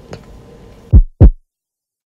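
Two deep, loud thumps about a quarter of a second apart, each falling steeply in pitch: a heartbeat-like bass sound effect.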